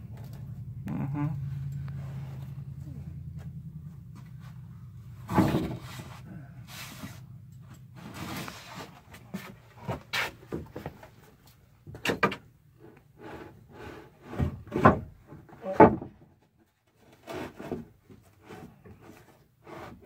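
Wooden boards being shifted and set down in an attic: a string of knocks, thuds and scrapes, loudest near the middle, over a steady low hum that fades out in the first half.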